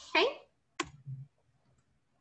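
A single sharp click of a computer key being pressed, about a second in, followed by a couple of faint small knocks, then quiet room tone.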